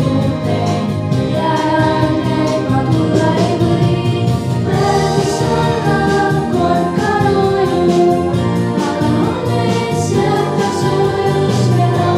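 A girls' vocal quartet singing together into microphones, over a steady instrumental accompaniment.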